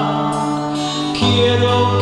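A man singing a slow hymn to his own acoustic-electric guitar, holding long sustained notes. The low note changes about a second in.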